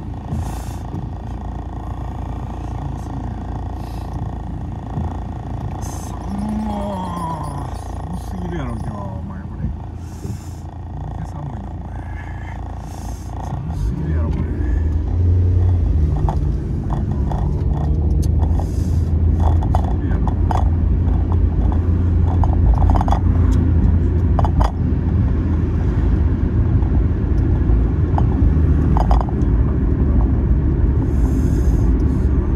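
Inside a car cabin: the car sits at a stop, then pulls away about halfway through, and the low engine and road rumble grows louder and stays up while it drives. A voice and some music sound faintly underneath.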